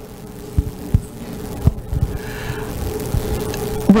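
A handheld microphone being handled as it is passed to a table, giving several irregular dull low thumps over a steady hum.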